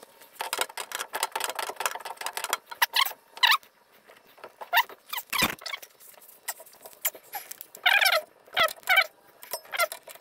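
Handling and fitting braided steel-covered 8AN oil lines and their AN fittings: a run of sharp metallic clicks and scrapes, with short squeaks of rubbing near the middle and twice near the end, and one heavier knock about halfway through.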